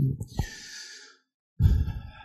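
A man breathing out audibly close to a handheld microphone in a pause between sentences, followed about a second and a half in by a short low burst of breath or voice.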